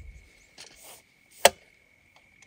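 A single sharp click about one and a half seconds in, with a few faint soft handling sounds before it, as a camera on a tripod is handled and adjusted.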